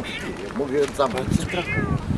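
A person's voice making a run of silly, wordless calls whose pitch wavers and falls, several in a row.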